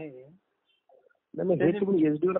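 A man's voice over a telephone line: a drawn-out syllable that falls in pitch and fades, a pause of about a second, then speech starts again.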